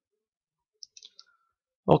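A few faint, short clicks about a second in, then a man starts speaking right at the end.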